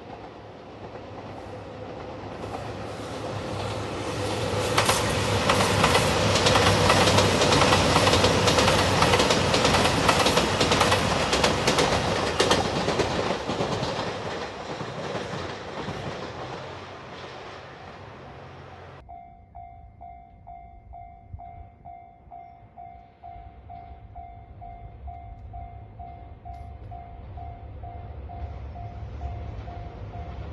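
JR Shikoku 2700 series diesel express train passing close by, growing louder, with wheels clacking over the rail joints, then fading away. About two-thirds of the way through, a level crossing warning bell sounds in a steady ding-ding-ding, about two strokes a second.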